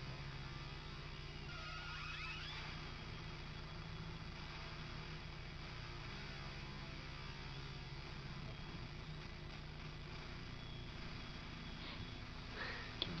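Faint, steady low hum throughout.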